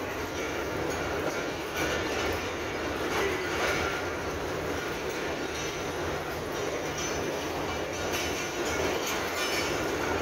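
Steady low diesel hum from a standing passenger train, with a few short clatters and knocks over it.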